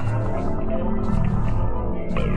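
Film score music over the credits: sustained low drones and held tones, with two short hisses high up in the first second.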